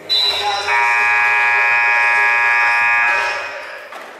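Gymnasium scoreboard buzzer sounding: a loud, steady electric blare that starts at once, holds for about three seconds, then dies away in the hall's echo. It signals the end of a period, as the players leave the court.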